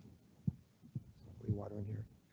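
Two soft low thumps about half a second apart, the footsteps of a man walking away from a lectern, then a brief low hummed voice sound near the end.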